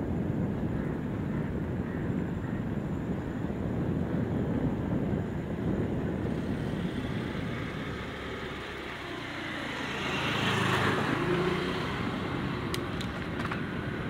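Steady rumble of wind and rolling noise from a moving bicycle, with a motor scooter passing close by about ten seconds in, its engine swelling and fading. A few sharp clicks near the end.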